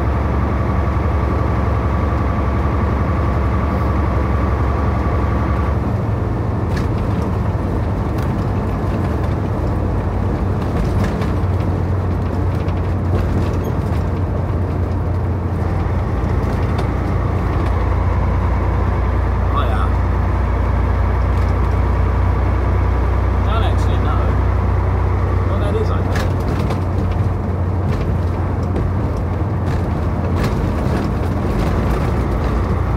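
Inside a big truck's cab at highway speed: a steady low engine drone with road and tyre noise. About six seconds in, the drone's tone shifts and a thin high whine drops away.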